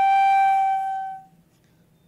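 A flute holding one long, steady note that fades out a little past a second in.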